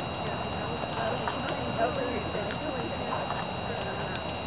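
Hoofbeats of a horse walking on the sand footing of a show arena, with indistinct voices in the background.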